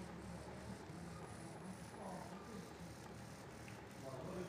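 Faint, distant voices murmuring under low room noise.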